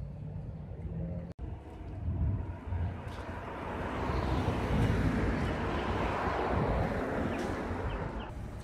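Street traffic: a motor vehicle passing close by, its noise building over a few seconds and peaking near the end. Before that there is a low hum that cuts off abruptly about a second in.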